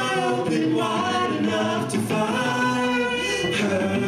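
Rock band playing live, a male voice singing over the band, with the vocal to the fore.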